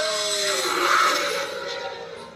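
Trailer audio from a screen's speaker: the tail of a drawn-out cartoon 'whoa' cry that ends about half a second in, then a whoosh sound effect that swells to a peak about a second in and fades away as the trailer cuts to its title card.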